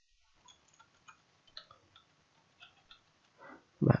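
Faint, sparse keystrokes on a computer keyboard, a handful of light clicks spread over a few seconds, with a spoken word beginning at the very end.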